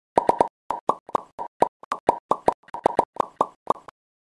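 A rapid run of short cartoon pop sound effects, about twenty at an uneven quick pace, each a brief hollow plop with dead silence between.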